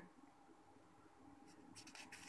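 Near silence: room tone, with a faint scratchy brushing of a hand on a paper page near the end.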